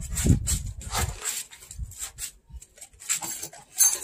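A Rottweiler catching and mouthing a tossed treat after a paw shake: several sharp clicks and snaps, with low rustling noise in the first second.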